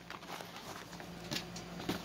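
Faint rustling and a few soft clicks of thread being tucked into a thin plastic kit bag, over a faint steady hum.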